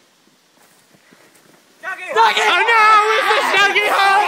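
About two seconds of faint background, then loud, high-pitched voices of several young men yelling at once, with no clear words.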